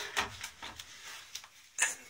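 A few light knocks and rubs from the white plastic Brunton Hydrolyzer unit being handled as it is lifted out of its cardboard box.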